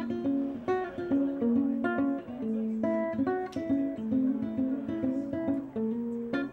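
Ukulele played solo: a quick run of plucked melody notes broken up by sharp strummed chord strokes, several to the second.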